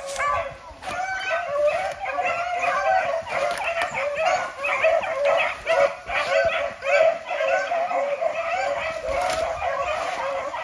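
A pack of rabbit hounds giving tongue together in a continuous chorus of overlapping baying and yelping calls, several a second with no gaps: the pack is running a rabbit's scent trail.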